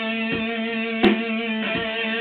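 V-shaped electric guitar playing: a low note keeps ringing while notes are picked over it in a steady beat, about one every three-quarters of a second, with a sharper accented stroke about a second in.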